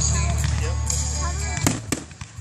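Fireworks display: a continuous deep rumble of bursting aerial shells, with two sharp cracks near the end. Voices or music sound alongside.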